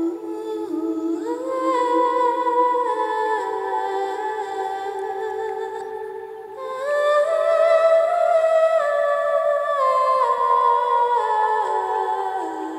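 Music: a voice humming a slow, wordless melody in long held notes that step up and down in pitch, with a short breath-like break about six seconds in.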